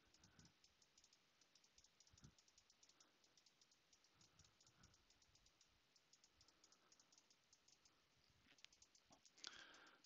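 Near silence with faint, rapid, irregular clicking from a computer keyboard and mouse in use.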